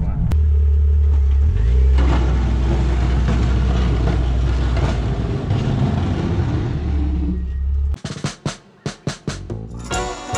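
Low, steady engine and road drone of a Jeep Cherokee XJ plow rig, which stops abruptly about eight seconds in. Music takes over from there, with a few sharp beats and then guitar.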